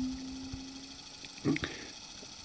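A man's held, hesitant hum that trails off, then a brief vocal sound about a second and a half in, over a faint steady whir from an Eberspacher D2 diesel night heater running.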